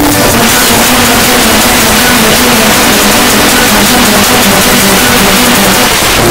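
Rap internet-radio stream playing through a media player, heard as loud, even noise with a faint wavering low tone under it and no clear beat.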